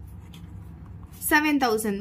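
Ballpoint pen writing on paper, a faint scratching, with speech coming in a little over a second in.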